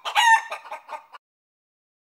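A short, high animal-like call that rises and falls, followed by about five quick, shorter calls, stopping a little over a second in.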